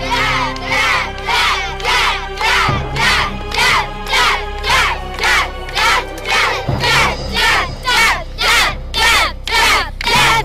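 A group of children chanting in unison, a short shout repeated about twice a second, each one falling in pitch, over background music with a low steady drone.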